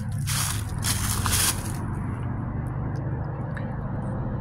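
A steady low hum of traffic from the nearby highway bridge. For the first two seconds it lies under a rustling hiss, which then stops.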